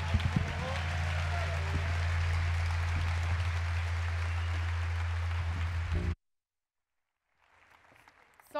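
A large indoor crowd applauding and cheering at the end of a live band's song, with a low steady note held underneath; the sound cuts off abruptly about six seconds in.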